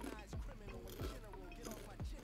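A few faint crunches of kettle-cooked salt and vinegar potato chips being chewed, under quiet voices.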